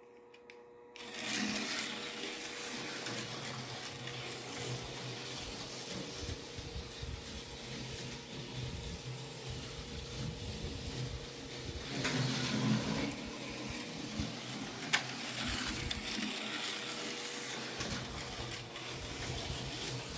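Johnny Lightning Thunder Jet H.O. scale slot car running laps on a plastic track: a steady electric-motor whir and buzz. It starts about a second in and swells briefly around twelve seconds in.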